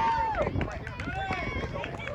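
Several voices calling out and talking over one another, with one drawn-out call near the start.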